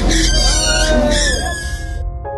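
Commotion at a stunt-bike mishap: a loud low rumble under a high, wavering squeal that rises and then falls over about a second.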